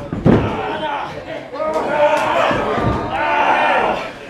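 A heavy slam on the wrestling ring about a third of a second in, followed by overlapping voices yelling around the ring.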